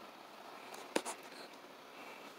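Faint scratchy rustling in a small room, with a sharp click about a second in and a smaller one just after.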